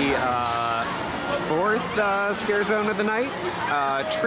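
A person's voice close by, in drawn-out, sliding tones that make no clear words: several long held sounds with pauses between them.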